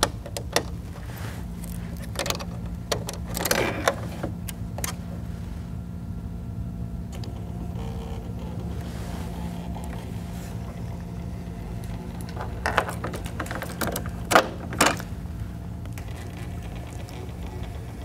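Steady low hum with scattered clicks and knocks from handling a DS200 ballot scanner, its compartment being opened and the close-polls controls worked.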